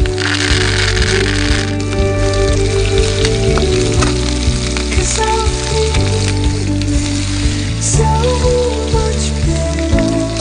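A bone-in pork chop sizzling steadily in hot oil in a frying pan with rosemary and garlic, under background music.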